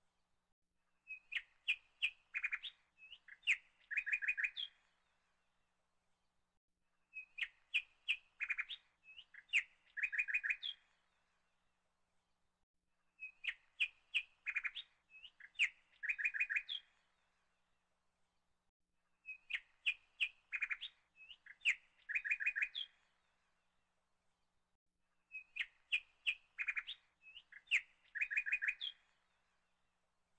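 Birdsong of quick chirps and short trills, the same phrase of about three and a half seconds repeated identically five times, once every six seconds, with dead silence between: a looped bird recording.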